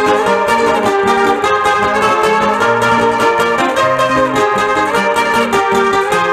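Two guitars playing an instrumental interlude of a mesano, the Panamanian tune for sung décimas, with steady rhythmic strumming over a repeating bass line.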